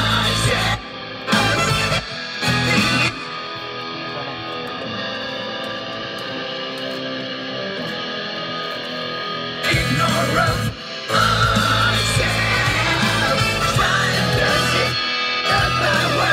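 Heavy rock track with electric guitar played back over studio monitors while being mixed. It stops and restarts briefly twice near the start, goes quieter and duller for several seconds in the middle, then comes back at full level.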